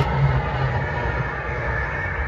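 Dhumal band's large drums playing together, a dense steady rumble with no clear beat.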